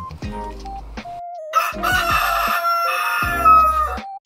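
A rooster crowing: one long cock-a-doodle-doo starting about a second and a half in, over light background music. It is an edited-in wake-up sound effect marking the change to morning.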